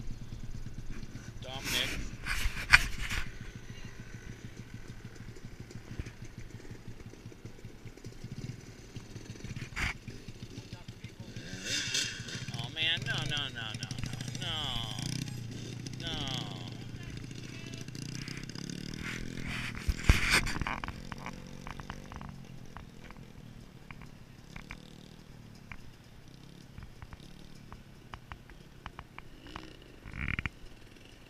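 Small dirt bike engine running, revving up and down as it is ridden off, the sound fading in the second half as it moves away. Sharp knocks a couple of seconds in and again about two-thirds through are the loudest sounds.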